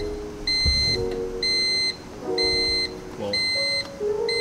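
Electronic beeping: a high, even tone sounding about once a second, each beep lasting about half a second.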